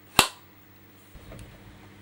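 A film clapperboard's clapper stick snapped shut once, a single sharp clap, followed by a faint low rumble.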